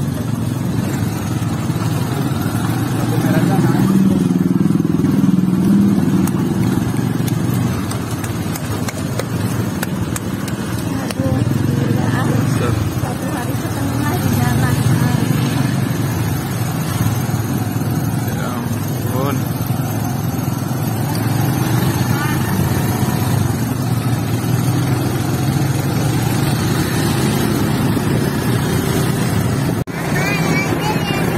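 Suzuki motorcycle engine running steadily as it pulls a sidecar becak along a road, with a low drone that swells for a few seconds early in the ride.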